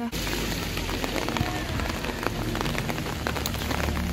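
Rain pattering on open umbrellas: a dense, steady spatter of drop ticks over a hiss, with a low rumble underneath.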